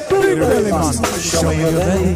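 Live reggae band playing: a steady bass line and drums under the lead singer's chanted vocal.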